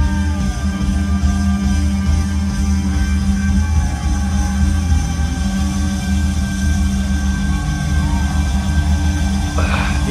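A live rock band recording playing, with electric guitar holding long notes over a steady low end.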